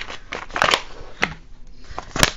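Crinkling and rustling of a plastic accessory pouch being handled and opened, loudest about half a second in, with a sharp click a little past a second in.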